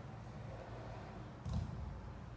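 Low, steady rumble of street traffic coming in through open windows, with a short knock about a second and a half in.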